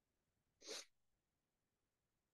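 One short, quiet breath from the speaker close to the microphone, lasting about a third of a second about half a second in, amid near silence.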